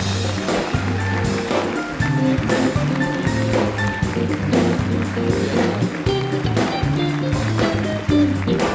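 Live band playing an upbeat instrumental: electric guitar, bass, keyboards and drums, with a steady beat and a prominent bass line.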